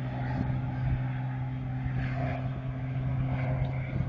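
Motorboat engine running steadily, a constant low hum with a faint higher overtone, over a rushing noise of wind and water.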